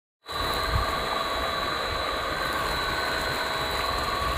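Water gushing steadily from a pump outlet into a concrete channel, with a steady high whine running over the rushing noise.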